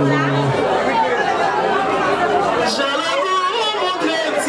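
Crowd chatter: many voices talking and calling out over one another, with one low note held through the first half second.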